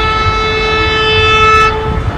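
Horn of an approaching ALCo WDG 3A diesel locomotive sounding one long, steady blast of nearly two seconds that cuts off near the end, over the low rumble of the train.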